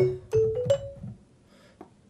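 Marimba sample playing a short run of four notes, each a little higher than the last, dry with no delay on it. The notes die away within about a second.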